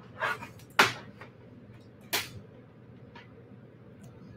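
Fine beading wire and a small metal end cap being handled between the fingers: a few light clicks and ticks, the two sharpest about a second and two seconds in.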